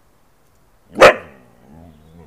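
Siberian husky giving one loud, sharp bark about a second in, followed by a quieter, wavering vocal sound.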